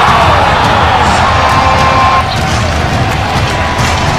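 Basketball arena crowd cheering, with background music laid over it.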